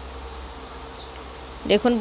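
A steady low buzzing hum with no change in level; a woman's voice starts just before the end.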